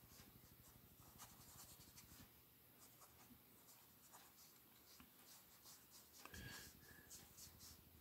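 Faint scratching of a marker tip rubbed over sketchbook paper in short, repeated coloring strokes.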